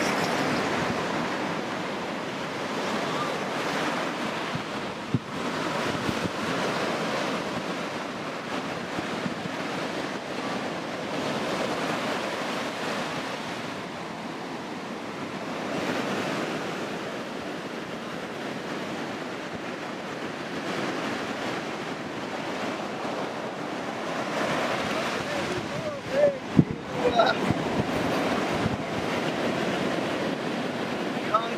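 Sea surf washing onto a beach, a steady rush of noise that swells and eases slowly with the waves, with some wind on the microphone. A few brief sharper sounds stand out near the end.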